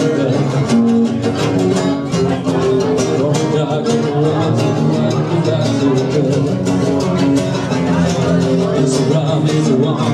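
Live acoustic set: two acoustic guitars strummed in a steady rhythm, with a man singing over them through a microphone.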